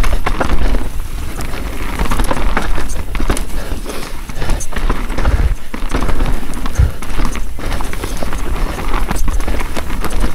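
Mountain bike descending rough dirt singletrack: a steady low rumble of tyres and air on the move, broken by frequent sharp knocks and rattles as the bike hits roots and rocks.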